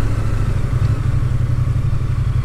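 Triumph Bonneville T100's parallel-twin engine running at a steady low rumble while riding along, with road and wind noise.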